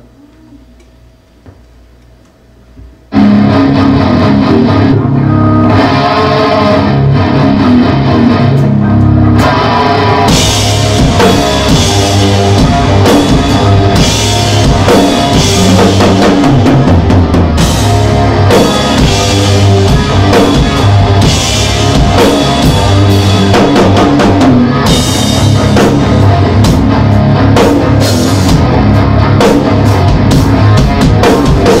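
Drum kit played live along to a hard-rock track with electric guitar, starting suddenly about three seconds in after a few quiet seconds.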